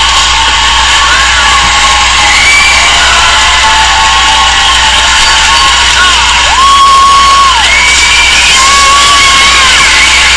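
A studio audience cheering and whooping loudly, with high shrieks gliding and holding above the crowd noise; the loudest is a held shriek about six and a half seconds in. Music sits faintly beneath.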